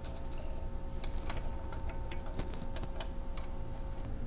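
Light, irregular metallic clicks and ticks of tools and small parts being handled while a Brother KE-430C bar-tacking sewing machine is taken apart, about ten over four seconds, over a steady hum.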